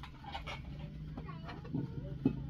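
Several short animal calls with bending pitch, over a steady low hum.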